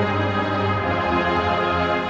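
A large brass band with sousaphones in the bass, playing full held chords over a shifting bass line.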